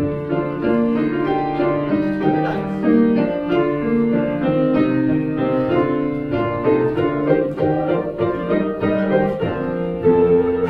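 Grand piano playing a passage of chords in a steady succession of held notes.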